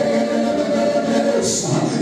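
A group of voices singing a worship song in long held notes.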